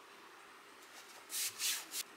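Fingers rubbing strips of masking tape down onto a canvas tote bag: three short rubbing strokes in the second half.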